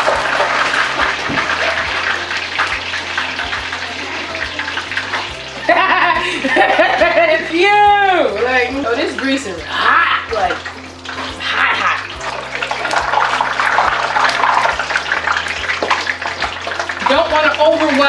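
Chicken wings deep-frying in a pot of hot oil: a steady sizzle as more wings go in, with a woman's voice talking and laughing over it.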